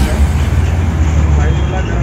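A bhatura deep-frying in a kadhai of hot oil, sizzling, over a steady low rumble.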